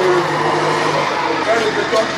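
Men's voices talking over a steady low engine hum, which fades about a second in.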